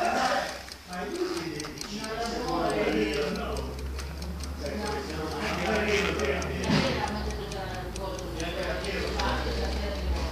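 Mechanical clockwork timer of an exercise bike ticking steadily as it runs, heard under people talking.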